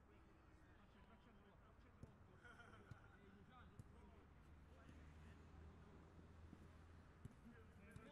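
Near silence: a faint low hum with a few faint knocks and faint distant voices.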